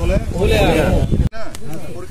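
Voice over background music with a steady low beat, cut off abruptly a little over a second in, then a man's voice alone.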